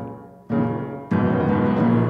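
Piano chords between sung lines: a chord struck about half a second in, then a louder one just after a second in that rings on.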